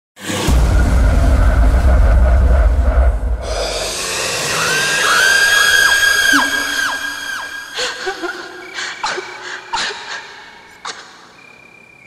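Horror-style logo intro sting: a heavy low rumble for the first three seconds or so, then high eerie ringing tones that swell and bend away, a few sharp hits, and a long fade out.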